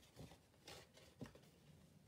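Near silence, with a few faint rustles of card stock being folded and pressed by hand.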